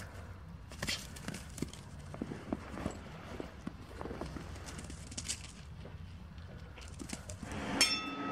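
Faint, irregular soft thuds and clicks of footfalls on grass over a low wind rumble on the microphone.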